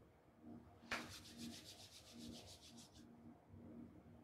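A faint click, then about two seconds of rapid, evenly paced scraping.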